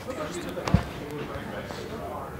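Indistinct speech from people talking across a large room, with one dull thump about three-quarters of a second in.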